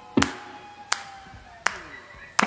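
One person's hand claps, close to a microphone, struck three times at an even pulse about three-quarters of a second apart, over faint sustained instrument notes.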